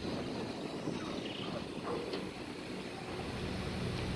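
A passenger riverboat's engine running with a steady low rumble while the boat is under way.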